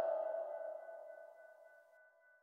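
The last note of a dub reggae instrumental ringing out faintly in reverb after the band stops, a steady pitched tone fading away to silence a little over a second in.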